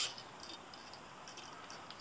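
Faint small ticks and rustles of hands working yarn and thread on a fly at a fly-tying vise.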